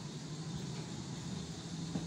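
Ambience of a large store interior: a steady low hum under a faint, even wash of background noise.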